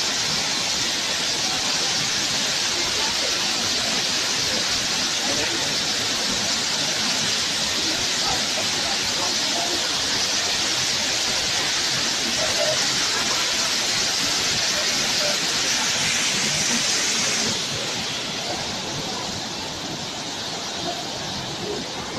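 Steady, loud rush of falling water from the Kutralam waterfall, an even hiss that drops a little in level about two-thirds of the way through.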